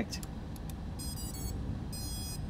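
Drone's brushless motors sounding their ESC startup beeps: short electronic tones in steps of pitch, starting about a second in, as the ESCs restart after being disconnected from the configuration software. A few soft clicks come just before.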